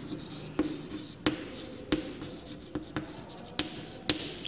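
Chalk writing on a blackboard: faint scratching strokes broken by a series of sharp taps as the chalk strikes the board.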